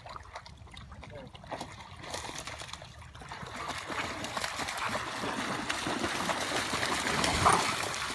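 Several dogs wading and running through shallow water, splashing; the splashing grows louder from about two seconds in as they come toward the shore.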